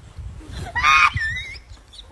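A person's short, high-pitched scream about a second in, wavering in pitch as it trails off, over low thumps.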